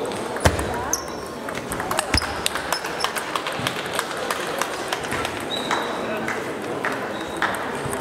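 Table tennis balls clicking off bats and tables, with several games going on at once: irregular sharp clicks, the loudest about half a second in.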